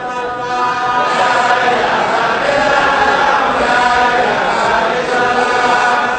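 A congregation chanting dhikr in unison, many voices holding a sung, repeated phrase, growing louder about a second in.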